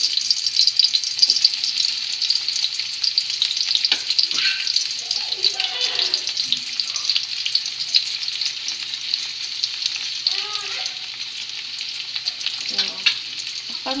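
Chopped onions and tomatoes sizzling in hot oil in a wok, a steady crackling fry as they are stirred. It softens a little in the second half.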